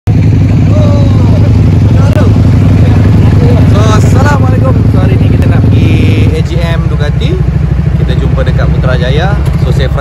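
Ducati motorcycle engines idling loudly close by, a dense low, pulsing rumble; it eases off somewhat about six seconds in.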